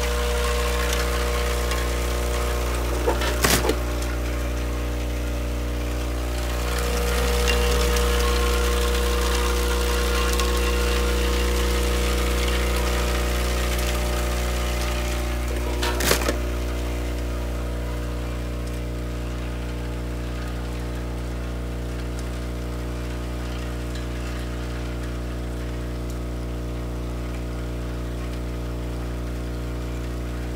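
Vibratory bowl feeder of a Batchmaster IV counting machine humming steadily, with a rattling hiss from the wrapped chocolate candies moving through it that falls away after about seventeen seconds. Two sharp clacks, one about three and a half seconds in and one around sixteen seconds.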